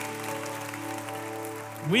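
A soft sustained keyboard chord held steady, under applause from a congregation.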